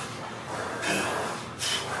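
Two short, sharp, noisy breaths, one about a second in and one near the end, from a weightlifter bracing under a heavy barbell before a back squat.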